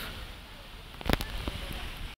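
Handling noise: two sharp clicks a little over a second in, then a few fainter ones, over a steady outdoor hiss.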